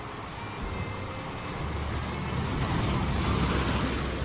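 Ocean surf rolling in and breaking on rocks: a deep rushing swell that builds over a couple of seconds, is loudest about three and a half seconds in, and starts to ease at the end.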